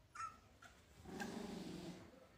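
Three-week-old husky puppies whimpering: a short, high, rising squeak just after the start, then a louder, longer, lower sound through the second half.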